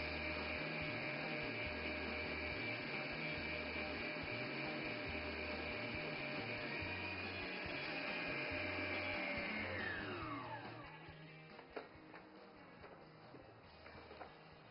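Electric stand mixer whisking egg whites at high speed, a steady motor whine, as the whites come close to stiff peaks. About ten seconds in it is switched off, and the whine falls in pitch as the motor winds down.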